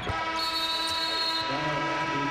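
Basketball arena horn sounding one long, steady blast of about a second and a half, signalling a substitution. A lower steady tone takes over near the end.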